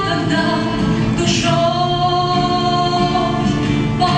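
A woman singing a Russian-language song solo, accompanied by acoustic guitar; she holds one long note from about a second and a half in to near the end.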